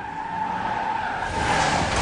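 Car tires screeching in one long, steady squeal over a low rumble: a cartoon sound effect of a car skidding to a stop.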